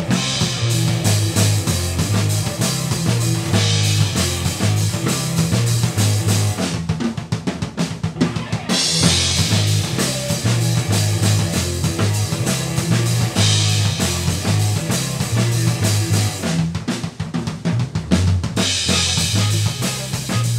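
A rock band rehearsing live: drum kit, electric bass and electric guitar playing a loud instrumental passage. The bass pulses on low notes throughout, while cymbal crashes swell in and drop out every few seconds.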